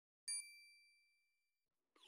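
A single high, bell-like ding about a quarter of a second in, ringing out with a few high tones and fading over about a second: an outro sound effect. A short sweeping sound begins right at the end.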